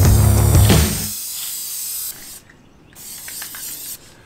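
Aerosol can of Plasti Dip spraying with a steady hiss that stops about two seconds in, under background music with a heavy bass that cuts off about a second in.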